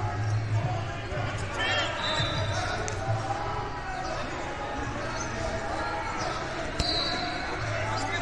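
Echoing wrestling-tournament gym ambience: overlapping voices of coaches and spectators, dull thuds, and a few short high squeaks, with a sharp knock near the end.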